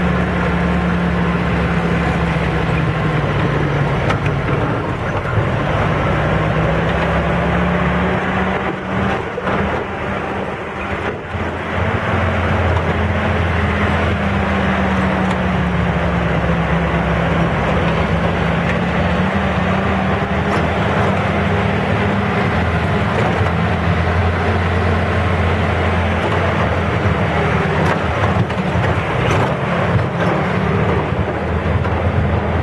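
Off-road vehicle's engine running under way on a rough dirt trail, heard on board, its pitch wandering up and down with the throttle. It eases off briefly about nine to twelve seconds in.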